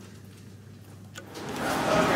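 Quiet room tone with a faint hum. About a second and a half in, a steady rushing noise rises: the ambience of a covered public walkway.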